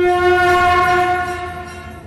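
A loud sustained horn-like tone on one steady pitch, a news channel's breaking-news sting, hitting suddenly and fading away over about two seconds.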